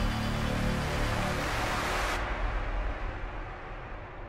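Cinematic logo-intro music with whooshing effects: a dense noisy swell over a deep rumble and a few held tones. Its bright top drops away about two seconds in and the whole sound then fades out.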